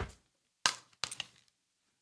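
A few short, sharp clicks from handling desk gear: one near the start, a louder one about half a second in, and a quick cluster of two or three about a second in.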